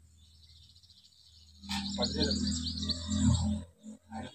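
Birds chirping, faint at first, then joined about halfway through by a louder, steady low drone. The drone cuts off shortly before the end.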